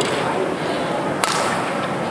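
Badminton rackets striking shuttlecocks: two sharp cracks a little over a second apart, over steady background noise.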